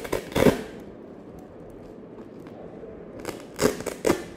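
Chest auscultation recording of fine 'Velcro' crackles (rales): two bursts of crackling, one at the start and one near the end, with faint breath noise between. These end-inspiratory crackles are typical of pulmonary fibrosis and interstitial lung disease.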